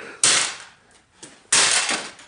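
Two loud sledgehammer blows on the broken computer's parts, about a second and a quarter apart. Each is a sharp crack that dies away over about half a second.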